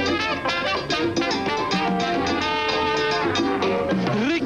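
Latin band playing a mambo live: an instrumental passage with no singing, sustained horn lines over conga drums and upright bass with a steady beat.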